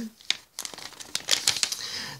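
Page of a glossy paper catalogue being turned by hand: crinkling, rustling paper with quick crackles, starting about half a second in and running on for over a second.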